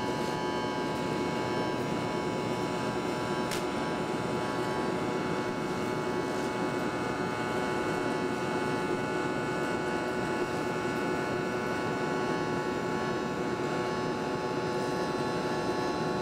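Electric arc welding on a steel plate: the arc sizzles steadily over a steady hum.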